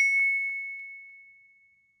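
Notification bell sound effect for the bell icon being clicked: one bright ding that rings and fades away over about two seconds.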